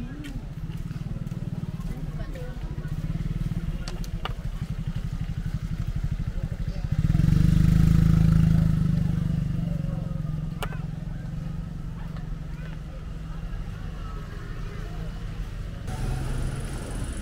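Roadside street ambience with a steady low engine rumble, and a motor vehicle passing close about seven seconds in, its sound swelling and then fading over the next couple of seconds.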